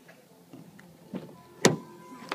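A car door being opened: two lighter knocks from the handle and door, then a sharp, loud latch click about one and a half seconds in. A faint steady electronic tone comes in just before the click.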